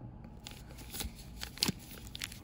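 Clear plastic sleeve around a silver bar crinkling in gloved hands as the bar is turned over: a few short, sharp crackles, the loudest about two-thirds of the way through.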